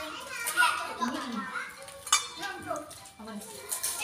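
Quiet background chatter and children's voices during a shared meal, with the clatter of dishes and a ringing metallic clink about two seconds in, as a metal cup is handled.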